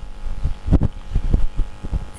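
A string of irregular dull low thumps, the loudest about three-quarters of a second in.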